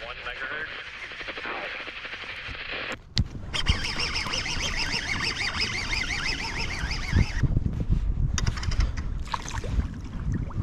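Voice talking over a VHF marine radio, tuned to the Coast Guard channel: thin, wavering and hard to make out, breaking off about three seconds in, resuming and stopping again near the end.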